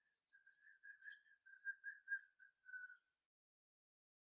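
Faint high-pitched whistling tone, wavering slightly, lasting about three seconds and then stopping.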